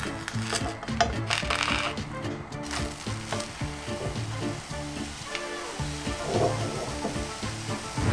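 A thin egg-and-milk pancake sizzling in a hot nonstick frying pan, with a few light scrapes of a silicone spatula working under it. Background music plays throughout.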